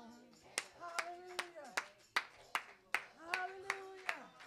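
Steady rhythmic hand clapping, about two and a half claps a second, with a voice calling out short drawn-out sounds between the claps.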